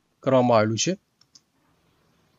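A man's voice speaks a short word, then just after a second in come two faint, quick clicks of a computer mouse, as the next line of the slide is brought up.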